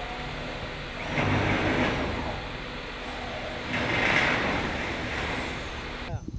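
Hand-held electric drill boring into a corrugated metal wall panel over steady construction-site noise, growing louder twice.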